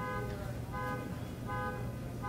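A short pitched beep repeating about every three-quarters of a second, over a low steady hum.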